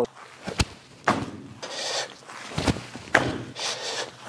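Landings of a person hopping on artificial turf: about four separate thuds, with scuffs and rustles of shoes on the turf between them.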